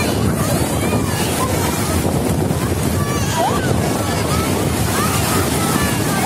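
Sea surf washing and breaking in the shallows, a steady loud rush of water, with wind buffeting the microphone.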